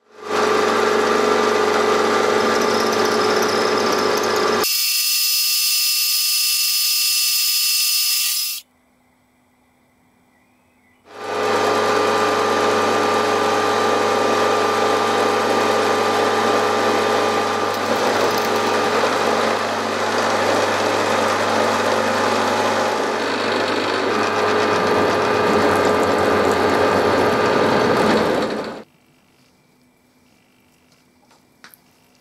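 Milling machine spindle running as it cuts and drills a metal nut, a steady machine sound with a few steady tones. About five seconds in it turns to a much higher, brighter whine for a few seconds, drops away for a couple of seconds, then runs steadily again for about 18 s before stopping suddenly near the end.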